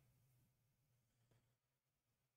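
Near silence: only a faint low electrical hum.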